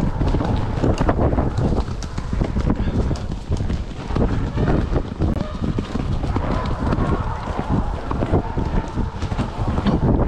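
A horse cantering over soft woodland ground, its hoofbeats falling in a steady rhythm, with wind buffeting the microphone.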